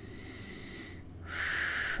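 A woman drawing a breath: a faint breathy stretch, then a louder in-breath lasting under a second, starting a little past the middle.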